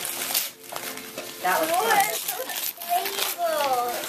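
Children's voices talking, with short bursts of wrapping paper rustling and crinkling between the words.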